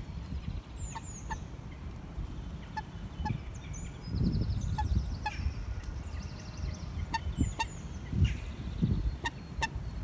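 Short, sharp calls of a common moorhen, mostly in pairs about every two seconds. Fainter high chirps of small birds and a low rumble lie beneath them.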